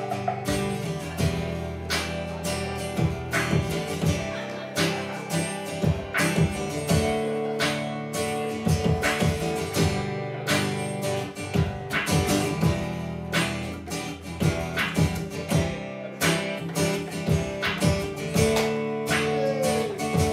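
Acoustic guitar strummed over a steady beat tapped out on a Roland HandSonic electronic hand-percussion pad, an instrumental passage with no singing.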